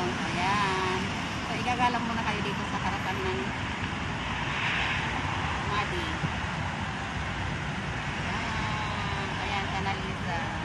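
Steady road traffic from cars passing on a busy multi-lane city street, with people talking over it in the first few seconds and again near the end.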